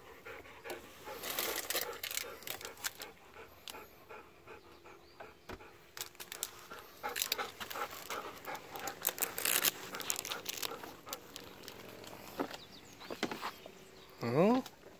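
Golden retriever panting close by, with scattered clicks and rustles.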